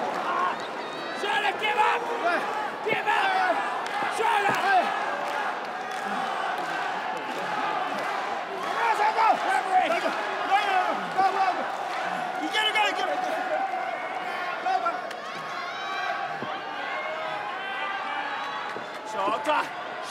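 Arena crowd of many voices shouting and calling out at once, swelling a few times, with occasional thuds from the wrestling ring.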